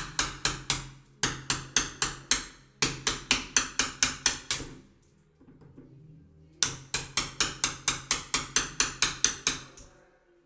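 Hammer tapping a blade down between a leaded stained glass panel and its wooden door frame to chase out the old putty: runs of sharp, quick blows, about four a second, broken by short gaps and a pause of about two seconds near the middle.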